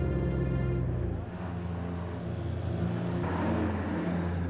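A heavy vehicle's engine running under background music; the low engine hum drops back about a second in.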